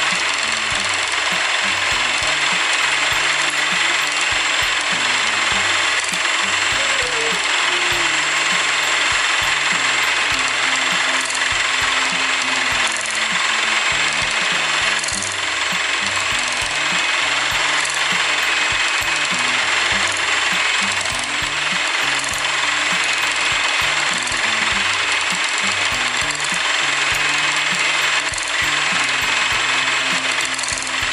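Electric hand mixer running steadily at a constant speed, its beaters whipping egg whites and sugar into meringue in a plastic bowl.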